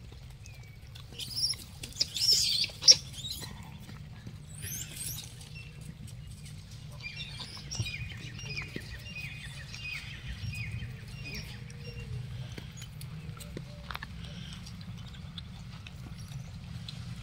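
High squeaks and chirps from animals, loudest about one to three seconds in, followed midway by a quick run of short, evenly repeated chirping notes, all over a steady low rumble.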